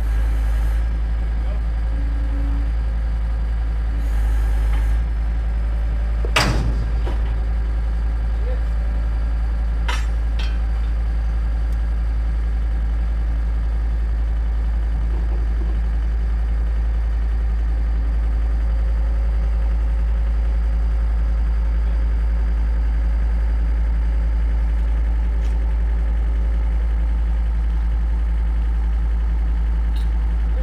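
John Deere 325 skid steer's diesel engine running steadily under load. About six seconds in there is a single sharp metallic bang, with a couple of lighter clanks a few seconds later, as the caboose's end brake-wheel stand is torn loose from its cut rivets and welds.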